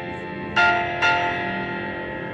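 Background music: two bell-like notes struck about half a second apart, each ringing on and fading slowly over a sustained chord.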